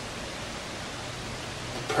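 Steady, even hiss with no other sound standing out of it.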